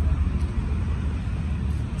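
Steady low rumble of outdoor background noise, with no distinct event standing out.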